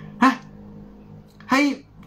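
A man's voice in two short exclamations with a pause between, over a steady low hum.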